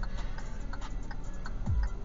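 A car's indicator flasher clicking steadily, a few clicks a second, over a low cabin rumble, with a low thump near the end.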